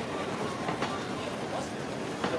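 Steady urban background noise, an even rumble with a few light clicks, with faint voices mixed in.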